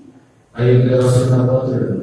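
A man's voice preaching into a microphone, drawing out a phrase in a level, chant-like tone that starts about half a second in after a brief pause.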